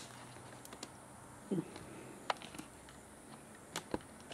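Quiet room tone with a few faint, sharp handling clicks, the clearest just before the end, and a brief murmur of voice about one and a half seconds in.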